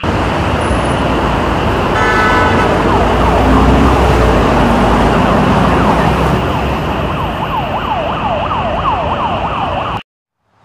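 Busy city street traffic noise, with a vehicle horn blaring about two seconds in and an emergency siren wailing rapidly up and down from about halfway on. The sound cuts off abruptly at the end.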